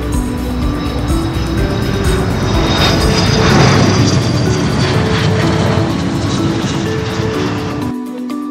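Background music with an aircraft flyby sound laid over it: a rushing roar that swells to a peak about halfway through, then fades, and cuts off suddenly at the end.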